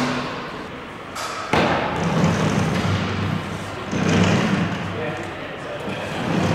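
Indistinct voices talking, with a sudden thump about a second and a half in.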